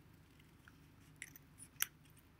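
Scissors snipping folded construction paper: a few faint cuts, then one sharper snip near the end.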